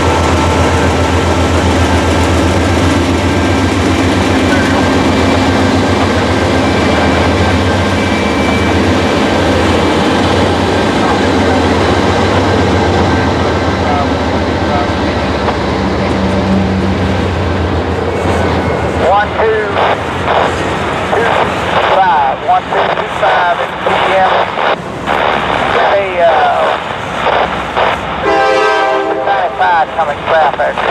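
A Norfolk Southern freight train passing close by. For about the first half its diesel locomotives give a loud, steady engine drone. Then the double-stack container cars roll past with uneven wheel-and-rail clatter and intermittent squeals.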